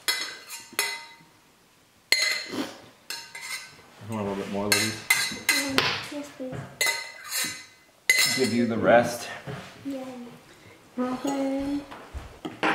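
Forks clinking and scraping on dinner plates, with a stainless steel serving pot knocked and handled as food is dished out, in a series of irregular clinks.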